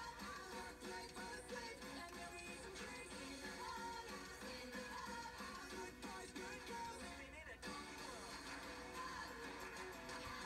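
Upbeat pop-rock theme-song music with sung lyrics, played from a television's speaker and picked up by a phone in the room.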